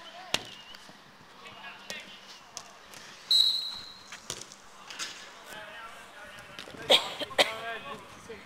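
Five-a-side football on artificial turf: the football being kicked in sharp thuds and players shouting, with a short steady whistle blast about three seconds in. The loudest kicks come near the end, each followed by shouts.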